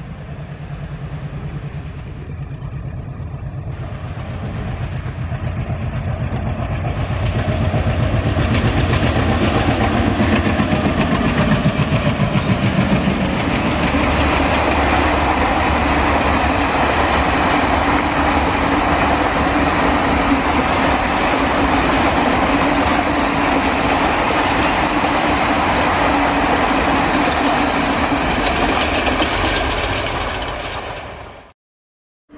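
A passenger train: first a locomotive approaching with a low, pulsing drone. Then, about seven seconds in, the sound switches abruptly to the long rake of coaches running past, a steady rolling rumble with the clickety-clack of wheels over rail joints.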